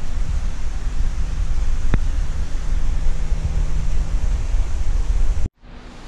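Loud steady rushing noise with a low rumble and a constant hum, the running water and pumps of large aquarium tanks. A single sharp click comes about two seconds in, and the noise cuts off abruptly near the end.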